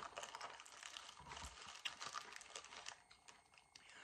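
Faint, crisp crunching clicks of crunchy pretzel sticks being chewed, thinning out to near quiet in the last second.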